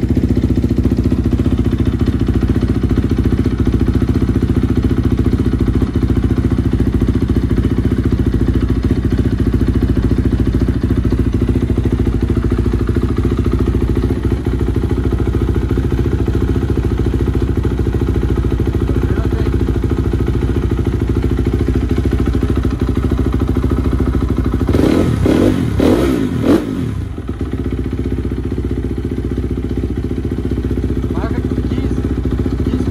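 Motocross bike engine running steadily at one pitch, then briefly revved up and down with some clatter about 25 seconds in.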